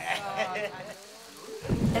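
A sudden clap of thunder breaks in about a second and a half in and goes on as a loud, low rumble.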